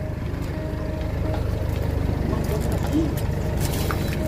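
Flatbed tow truck's engine running steadily under load, driving the winch that pulls a car up the tilted bed; the low drone swells slightly over the few seconds.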